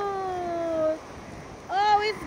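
A person's long, drawn-out "awww" that slowly falls in pitch and ends about a second in. A second, shorter vocal sound that rises and falls begins near the end.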